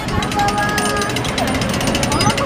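Hand-cranked souvenir penny-press machine, its gears clattering rapidly and steadily as the crank is turned to roll a coin flat.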